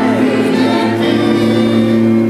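A choir singing gospel music, with long held notes.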